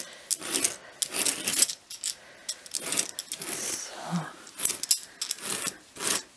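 A dog brush raked repeatedly through the long pile of a faux-fur rug, a series of short scratchy strokes about two a second, teasing out fibres matted together by machine washing.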